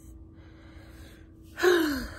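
A woman sighs loudly about a second and a half in: a short voiced exhale that falls in pitch, weary from feeling unwell.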